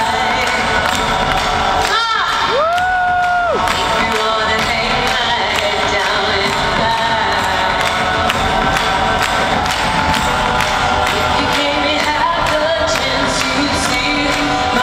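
Live arena concert music heard from the audience, a steady percussion-driven beat with the crowd cheering over it. About two seconds in, a voice rises in a quick whoop, then holds a note for about a second.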